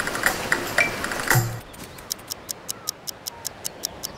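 Churning, splashing water with a few short high pings for about the first second and a half. Then a rapid, even mechanical ticking, about five ticks a second.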